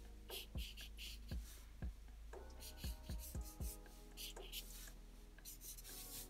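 Black felt-tip marker drawing on paper in a run of short, quick, scratchy strokes, quiet throughout.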